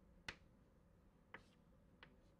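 Chalk tapping on a blackboard while an equation is being written: two short sharp taps, one just after the start and a fainter one past the middle, over near silence.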